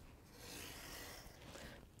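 Utility knife blade drawn through cardboard along a steel ruler: one faint, scratchy cut lasting about a second and a half.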